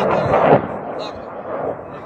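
Ammunition cooking off in a large fire: a loud bang about half a second in, over a continuous rumble of blasts.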